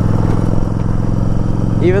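Yamaha Virago 1100's V-twin running steadily at cruising speed through aftermarket Vance & Hines pipes, heard from the saddle.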